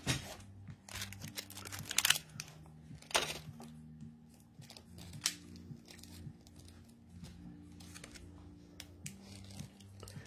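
Rustling, crinkling and light clicks of small items and packaging being handled on a desk, in a few short bursts, over faint low steady tones.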